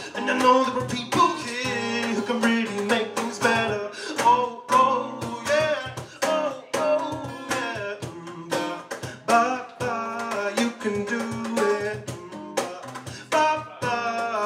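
Acoustic guitar strummed in a steady rhythm under a man's singing voice, played live in a small room.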